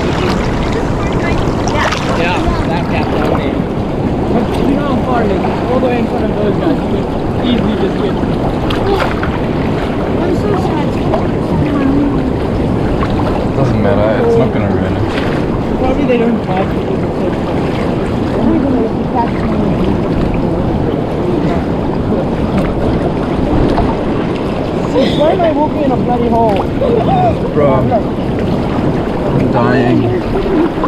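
Sea water sloshing and rushing around a camera held at the water's surface as people wade through a strong current, with wind buffeting the microphone.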